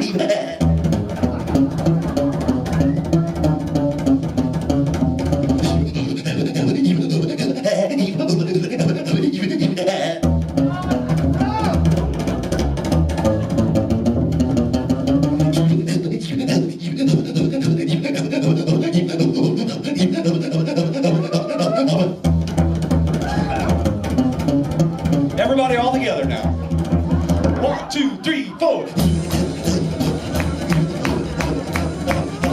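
Hillbilly eefing, rhythmic whispered vocal percussion into a microphone, in a call-and-answer duel with a slapped upright double bass. The clicking rhythm runs throughout, while the bass's low notes drop in and out in long stretches.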